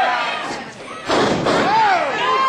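A wrestler's body slamming onto the wrestling ring mat about a second in: one loud thud that rings on briefly through the ring, with voices shouting before and after it.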